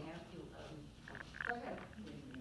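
Faint, distant speech picked up off-microphone, in two short spells, about a second and a half apart.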